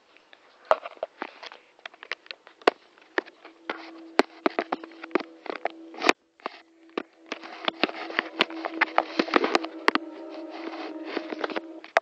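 Close handling noise: many irregular sharp clicks and knocks with rubbing, as the webcam is moved and a drumstick is handled near it. A steady low hum comes in about a third of the way through and holds to the end.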